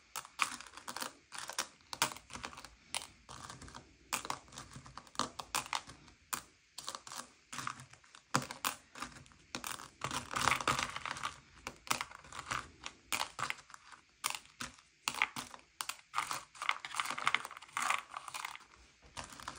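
Candy-shelled M&M's clicking and rattling against each other and a paper plate as fingertips push and sort them: quick irregular clicks with denser clattering runs about ten seconds in and near the end.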